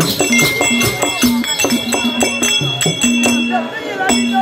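Tamil therukoothu folk-ensemble music: a barrel drum beating a fast, even rhythm with metallic jingling over it, and an instrument holding long steady notes.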